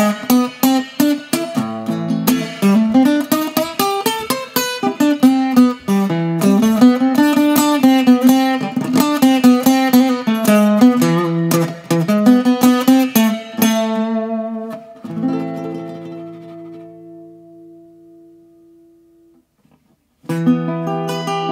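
Enya Nova Go SP1 carbon fiber travel-size acoustic guitar being played, a quick run of notes and chords, then a last chord about three-quarters of the way in that rings and fades away over about five seconds.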